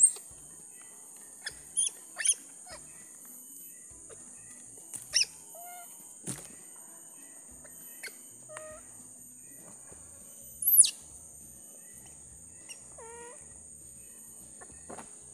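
A baby monkey giving short high-pitched squeals and cries, several spaced a few seconds apart; the loudest is a sharp falling shriek about eleven seconds in. A steady high-pitched insect chorus runs underneath.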